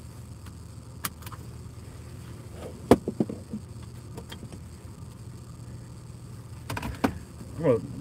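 Steady low hum of an idling car heard inside the cabin, with a few sharp clicks and some handling rattle, the loudest click about three seconds in.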